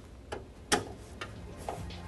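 Phillips screwdriver clicking on a power-supply mounting screw in a PC case's steel back panel as the screw is undone: four light clicks about half a second apart, the second the loudest.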